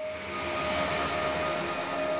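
Synthetic logo-sting sound effect: a steady hissing whoosh with a few faint held tones underneath.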